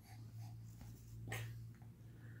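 Quiet room with a steady low hum and one faint, short breath about a second and a half in.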